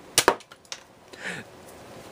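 Two sharp plastic clicks close together from a cheap spring-action foam dart pistol, followed by a fainter click.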